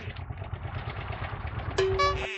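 Motorcycle engine idling with a low, even pulsing. Near the end a steady pitched tone starts over it.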